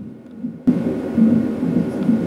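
Fetal heartbeat played through a cardiotocograph's Doppler loudspeaker, a low whooshing pulse that cuts in suddenly about half a second in.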